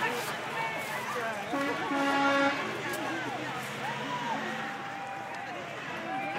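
A vehicle horn sounds once for about a second, a steady pitched honk, amid the voices and calls of a street-side crowd.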